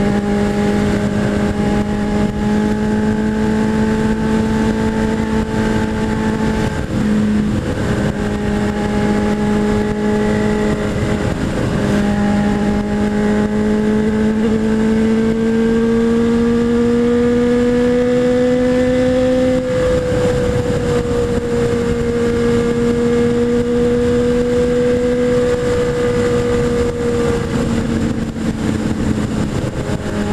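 Honda Hornet 600's inline-four engine running at highway cruising speed, under heavy wind rush. The engine note holds steady, dips briefly twice, then climbs slowly for several seconds past the middle as the bike speeds up, before easing off and dropping a little near the end.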